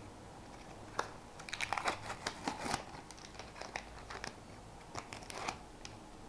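A trading-card packet's wrapper being torn open and crinkled by hand: a sharp snap about a second in, then a flurry of crackles for a couple of seconds, with a few smaller crinkles later.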